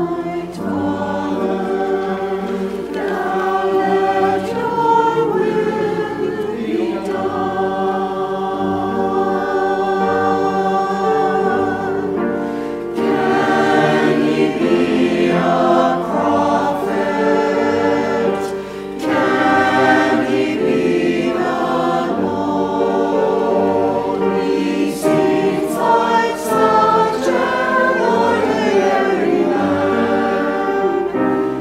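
Mixed church choir of men and women singing an anthem in harmony, with piano accompaniment.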